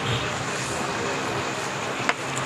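Steady rushing background noise with a faint low hum underneath, unchanging throughout.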